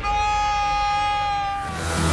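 A man's long, open-mouthed scream, held for about a second and a half and falling slightly in pitch, then fading as the theme music comes in near the end.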